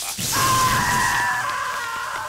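A cartoon cockroach's long, held scream as he is electrocuted by an arc from a power line, starting about a third of a second in, over a noisy electric crackle.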